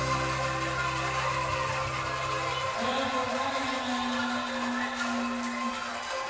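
Bamboo angklung ensemble played by shaking, holding rattling sustained notes; the chord changes to a new note about halfway through.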